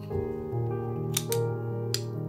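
Soft background music with sustained notes, over which two metal spoons clink sharply three times as they scoop and push off chocolate chip cookie dough.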